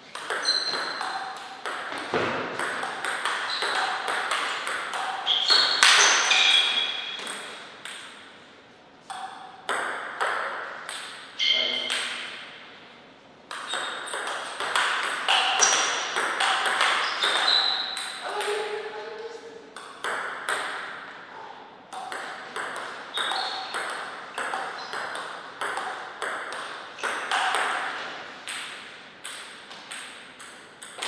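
A table tennis ball being struck by rackets and bouncing on the table in several fast rallies: quick runs of sharp clicks, with short pauses between points.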